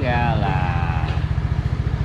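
Motor scooter engine running close by as it rides past, a rapid, even low pulsing.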